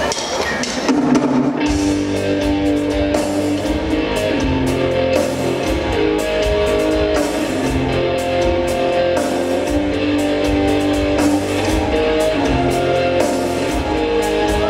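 Live rock band playing electric guitar, bass, drum kit and keyboard, with the full band coming in loudly about two seconds in and running on with a steady beat and held keyboard and guitar notes.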